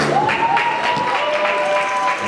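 Audience applauding, starting just as the rumba music ends.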